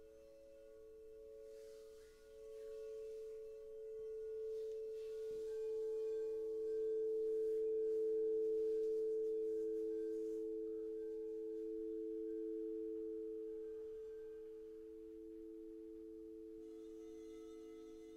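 Frosted crystal singing bowls played with mallets, several pure tones ringing together as a chord. The sound swells to its loudest about eight seconds in and then slowly fades, with a lower tone struck in about five seconds in and new tones joining near the end.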